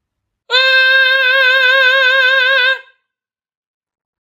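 Male tenor voice singing one sustained high note on an open vowel with even vibrato, starting about half a second in and held for a little over two seconds before stopping cleanly; the note is sung covered, the voice deepened with an elongated vowel rather than opened.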